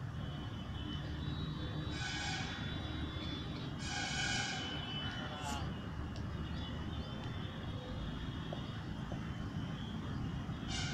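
Outdoor ambience: a steady low rumble with a few short, high-pitched calls about two and four seconds in and a quick rising squeal midway.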